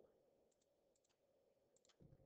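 Three faint computer-mouse clicks, each a quick double tick of press and release, spaced about half a second to a second apart, as numbers are entered on an on-screen calculator.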